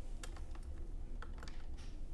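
Plastic keys of a TI-84 Plus graphing calculator being pressed, about six soft clicks at uneven intervals, as the trace cursor is stepped along the graph with the arrow keys.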